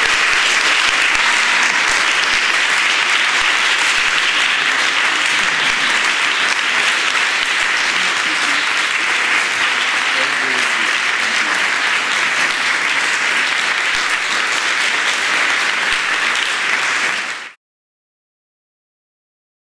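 Audience applauding steadily, cut off abruptly near the end.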